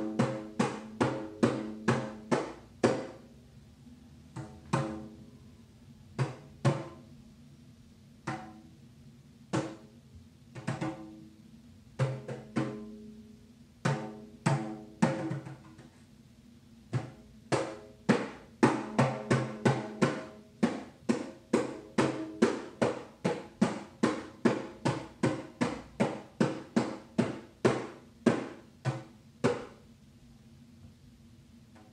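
A hand-held frame drum struck by hand in turn-taking phrases of beats, each beat with a short ringing tone. The beats come in short groups with gaps through the first half, then run fast and steady, several a second, from a little past the middle to the end.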